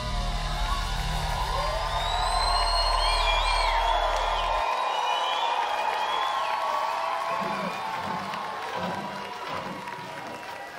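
A concert crowd cheering, whooping and whistling as a rock band's song ends. The band's last low held chord stops about halfway through, and the cheering carries on alone after it.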